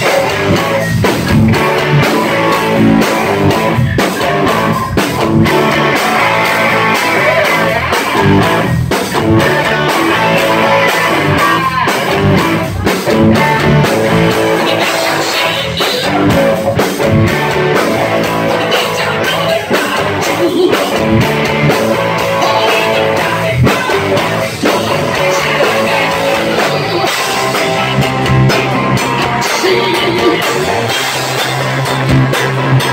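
Live rock band playing loud and without a break: electric guitars over a drum kit.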